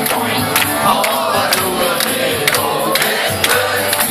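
Live band music played loud through PA speakers, with a steady beat about twice a second, and a crowd clapping along.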